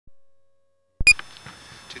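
Silence, then a click and one very short, high electronic beep about a second in, followed by faint hiss.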